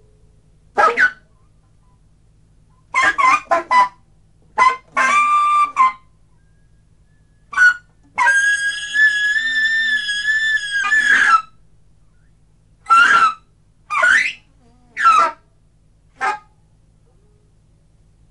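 Free-improvised solo saxophone playing short, separated high stabs and squeals with silences between them. About eight seconds in comes one long held high note that wavers slightly, lasting about three seconds.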